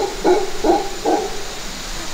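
A lone mantled howler monkey calling: loud, deep rhythmic grunting pulses, a few a second, that fade out after about a second.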